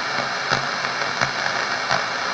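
Steady background hiss of a radio broadcast, with a few faint clicks.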